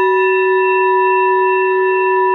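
Metal singing bowl ringing on after a single strike with a suede-padded wooden mallet: a steady, loud deep hum with several higher overtones sounding together.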